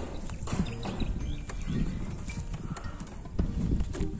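Irregular wooden knocks and clatter, a scatter of short hollow strikes as a wooden plank is handled against the roof edge on a bamboo ladder.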